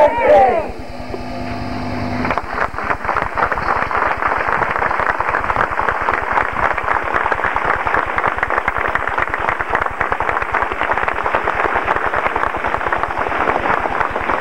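Crowd applauding: dense, steady hand clapping that starts about two seconds in and carries on.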